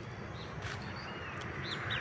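Birds chirping in the background: several short, high calls scattered through, over faint steady outdoor background noise.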